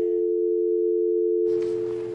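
Telephone dial tone: a steady hum of two tones sounding together, holding unchanged throughout.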